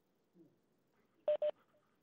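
Two short electronic beeps in quick succession on a web-conference phone line, about a second and a quarter in, after a stretch of near quiet. The beeps come as a telephone dial-in participant's line becomes active.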